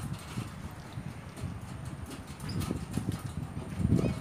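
Footsteps on the wooden planks of a footbridge: a run of hollow knocks, about two to three a second.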